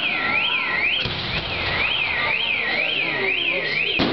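A car alarm wailing, its tone sweeping up and down about twice a second, over the bangs and crackle of a fireworks display, with one sharp bang about a second in.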